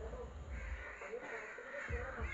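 A woven hand fan waved close to the microphone, its air giving low gusts twice, with birds calling repeatedly in short harsh calls in the background.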